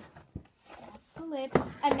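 A single soft knock about a third of a second in, with faint rustling, as cardboard packaging from a doll box is handled. A girl's voice then starts speaking in the second half.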